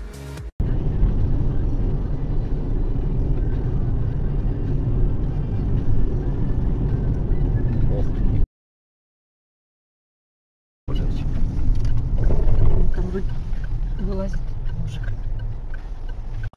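Car interior recorded by a dashcam while driving: a steady low rumble of engine and road noise. The sound cuts out abruptly about eight seconds in and resumes after about two and a half seconds of silence, now with voices in the car over the rumble.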